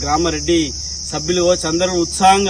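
A man speaking, with a short pause about a second in, over a steady high-pitched chirring of crickets that runs on unbroken beneath his voice.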